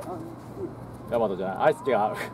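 Quiet for about a second, then a voice speaking or calling out with a rising and falling pitch.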